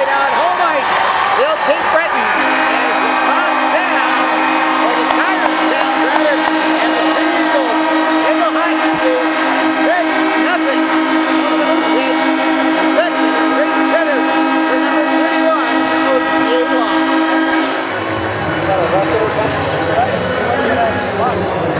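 Arena horn sounding a steady chord for about fifteen seconds, marking the end of the game, over a cheering crowd. The horn starts about two seconds in and cuts off near the end.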